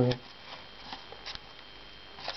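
Faint rustling handling noises as a hand touches the leaves of a young seed-grown lemon seedling in a plastic cup: a few soft, short rustles about a second in, over quiet room tone.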